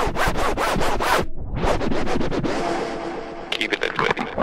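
Electronic dance music from a live DJ mix in a break without the kick drum: rapid stuttering, chopped noise hits that drop out briefly a little over a second in, then come back and build into a flurry of quick hits near the end.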